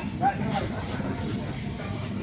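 Indistinct talk from several people in a group, over a low steady rumble.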